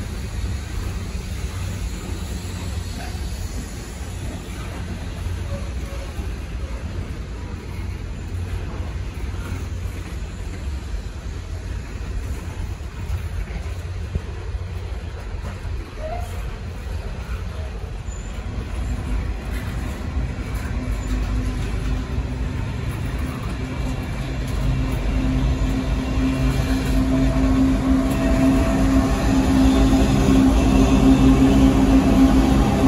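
Train running with a steady low rumble that grows louder in the second half, a steady hum joining it about two-thirds of the way in.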